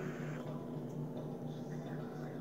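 A long draw on a vape mod with a single Kanthal Clapton coil in a dripping atomizer: a faint airflow hiss, heard over a steady low hum.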